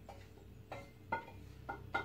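A wooden spoon knocking and scraping against a stainless steel saucepan as soup is scraped out into a mug: four short, faint knocks, each with a brief metallic ring.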